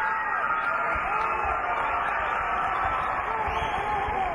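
Arena crowd noise with many overlapping voices calling out, and several short dull low thumps from about a second in.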